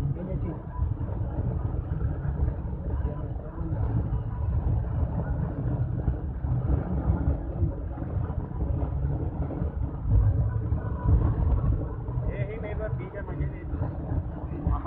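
A road vehicle travelling, with a steady low rumble of engine and road noise. Voices talk over it, most clearly near the end.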